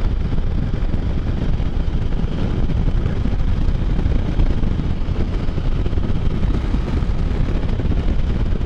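Can-Am Spyder three-wheeled motorcycle cruising at steady speed: a continuous, even mix of engine and wind rush at the handlebar-mounted camera, heaviest in the low end.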